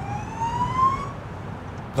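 Police car siren sounding a single rising wail that stops about a second in, over a steady low rumble.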